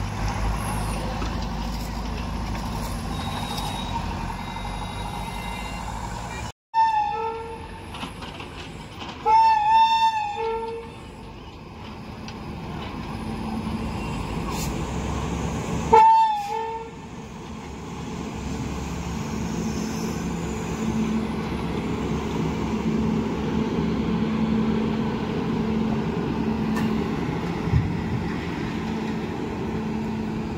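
Train horn sounding in short blasts, about 7 s, 10 s and 16 s in, over the steady rumble of a train on the line. The rumble grows louder in the second half.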